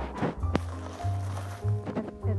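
Background music with sustained low bass notes and held tones.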